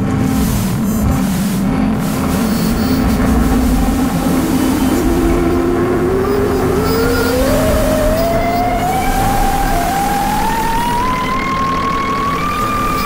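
Live laptop-generated electronic music: a dense low noise drone, with a single tone that enters about five seconds in and glides slowly and steadily upward to the end.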